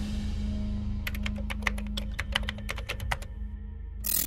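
A keyboard-typing sound effect: a quick, irregular run of sharp clicks lasting about two seconds, starting about a second in, over a steady low music drone.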